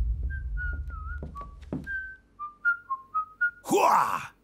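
Someone whistling a short tune: a quick run of clear notes, some sliding or wavering in pitch, over a low rumble that fades out in the first two seconds. Near the end a loud, harsh burst of noise.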